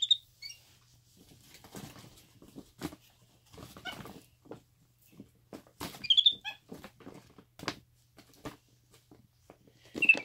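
Capuchin monkey rummaging in a shiny plastic gift bag: crinkling and rustling of the bag throughout, with short high-pitched squeaky chirps at the start, again about four seconds in, and loudest about six seconds in.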